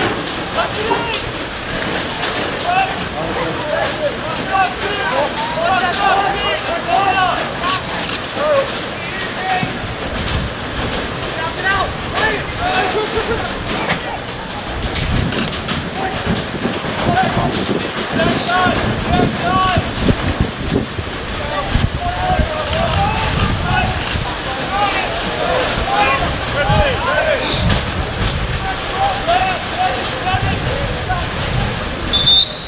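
Indistinct shouts and calls from players and coaches across a lacrosse field during play, with a few sharp clicks. From about ten seconds in, wind rumbles on the microphone.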